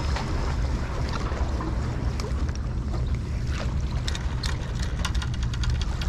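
Spinning reel being cranked in a steady straight retrieve of a shore-jigging lure: light clicks and ticks, with a quick run of them near the end, over a steady low rumble.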